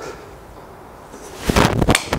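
Callaway Rogue Sub-Zero driver striking a golf ball off a hitting mat, one loud, sudden strike about a second and a half in, a solid strike out of the middle of the face.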